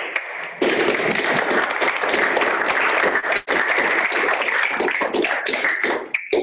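Audience applauding: a dense patter of many hands clapping that swells about half a second in and then holds steady.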